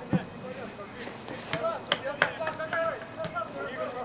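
Voices calling out on an outdoor football pitch, with a few sharp knocks, the loudest just after the start and three more close together around the middle.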